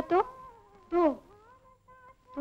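A woman's voice in dialogue: her sentence trails off just after the start, and about a second in she says one short word that falls in pitch. Faint steady tones of background music sit underneath.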